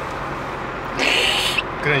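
BMW M3 running at low revs, a steady low hum heard in the cabin with a window open. About a second in comes a short, loud hiss lasting about half a second.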